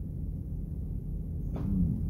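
Steady low rumble in a van's cabin during a pause in talk. Near the end comes a short breath and the faint start of a man's voice.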